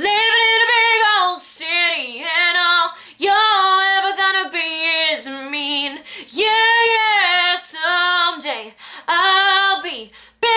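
A young woman singing solo with no instruments, in long held notes that bend in pitch, phrase after phrase with short breaks for breath.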